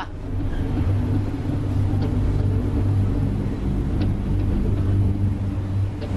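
A steady, loud low rumbling drone that holds the same pitch throughout, with faint ticks about two and four seconds in.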